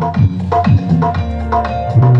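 Electronic dance music played loud on a DJ road-show sound system. A heavy kick drum hits about twice a second, each hit falling in pitch, and a held low bass note takes over near the end.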